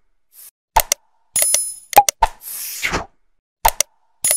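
Outro sound effects for a like-and-subscribe animation: a short bright ding, two sharp clicks and a brief whoosh, the group repeating about every two and a half seconds.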